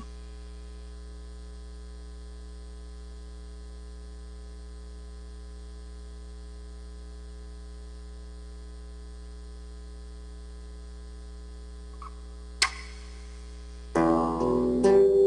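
Steady electrical mains hum in the audio feed, a low buzz with many even overtones. One sharp click comes near the end.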